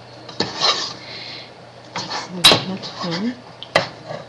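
Wooden spoon stirring a thick, sticky dough in a Cuisinart saucepan, scraping around the pan with a few sharp knocks against its side, the loudest about two and a half seconds in.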